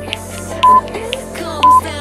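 Workout interval timer beeping twice, short high beeps about a second apart, counting down the last seconds of an exercise interval over background pop music.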